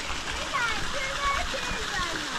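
Stream water running and splashing over rock, with a high voice over it in short rising and falling calls.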